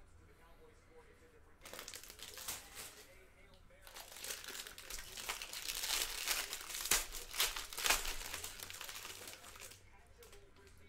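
Crinkling and rustling of a foil card-pack wrapper and a stack of trading cards being handled and sorted, in two stretches: a short burst about two seconds in, then a longer, louder one from about four seconds that stops just before the end.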